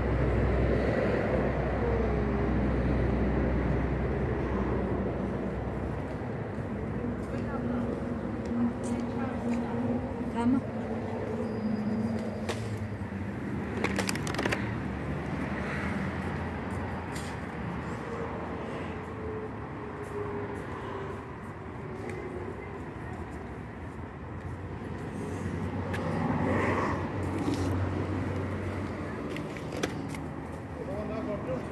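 Indistinct background voices over a low steady hum that fades out about six seconds in, with a few sharp clicks around the middle.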